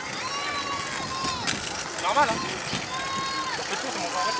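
Voices of spectators at the roadside of a children's bike race, with several long, high-pitched calls that fall away at the end and a loud wavering shout about two seconds in.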